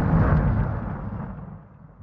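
The tail of an explosion sound effect in a logo intro: a deep rumbling boom fading steadily away over about two seconds.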